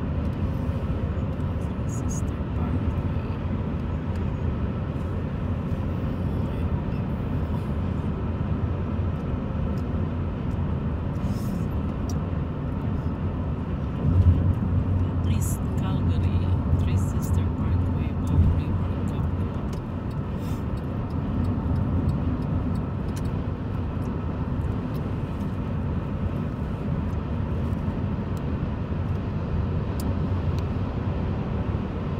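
Road noise inside a moving car on a highway: a steady low rumble of tyres and engine, growing louder for a few seconds about halfway through.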